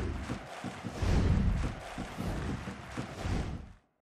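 Outro logo sting: a rushing swoosh with several deep bass hits, fading out just before the end.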